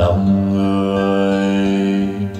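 Recorded Vietnamese ballad playing through hi-fi floor-standing loudspeakers: a long held low note with steady overtones comes in suddenly and sustains, between acoustic guitar passages.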